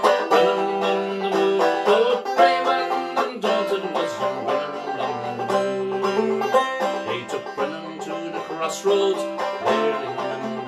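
Long-neck five-string banjo played solo, a steady run of picked notes and chords with no voice.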